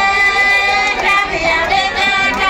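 Women singing, a high voice holding long, steady notes.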